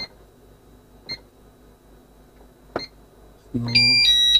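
Pyronix Enforcer alarm keypad beeping as its keys are pressed: three short high beeps spaced about a second or more apart, then a louder, longer beep near the end.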